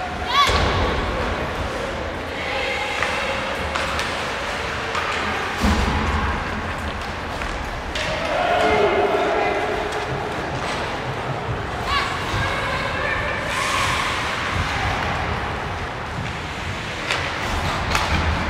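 Ice hockey game in an echoing rink: voices calling out from the bench and stands, with a few sharp thuds of puck or players against the boards, the strongest about half a second in and near six seconds.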